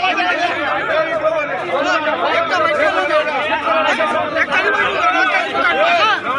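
Crowd of men talking and shouting over one another, many voices overlapping without a break: farmers voicing an angry protest.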